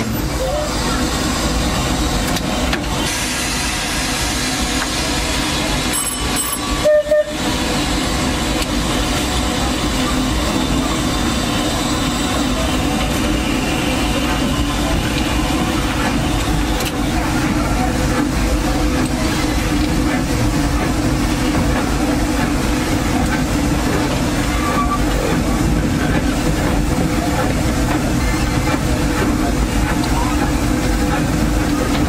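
Steam locomotive running, heard from the cab or tender: a steady mix of rail and running-gear noise with a high hiss of steam. A brief, louder sound breaks in about seven seconds in.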